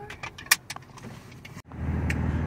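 A few sharp clicks and taps inside a car, then near the end a steady low hum of the 2006 Nissan 350Z's 3.5-litre V6 idling, heard from inside its cabin.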